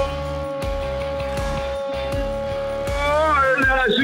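A male football commentator's long drawn-out goal cry, held on one high note for about three seconds and breaking into fast speech near the end, over background music with a steady low beat.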